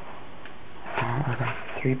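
A man talking: after about a second of faint steady room hiss, he makes a short wordless vocal sound, then starts speaking near the end.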